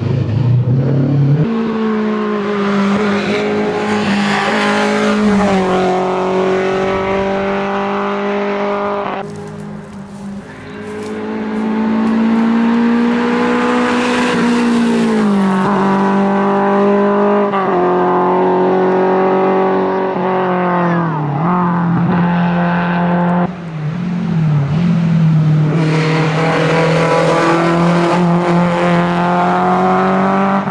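Lada 2105 rally car's inline-four engine driven hard on a rally stage, its pitch holding high, then sagging and climbing again several times as the driver lifts and changes gear. There is a brief lull around ten seconds in and a sudden dip a little past twenty seconds.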